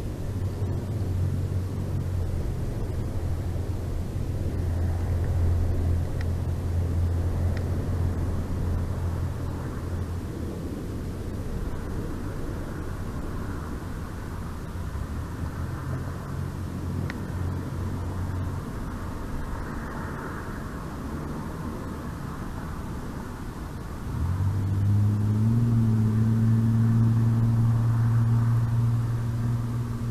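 Low, steady engine drone from distant motor traffic over outdoor background noise. It fades about two-thirds of the way through, then a second, louder engine note comes in about three-quarters through and holds steady.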